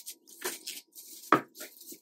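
Plastic cling film crinkling and rustling in gloved hands as it is stretched over the bottom of a metal cake ring, in short bursts. A sharp knock comes about two-thirds of the way through.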